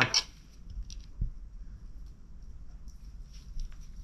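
Faint handling sounds of braided fishing line being worked by hand at a table: scattered light ticks and rustles, with one soft thud about a second in.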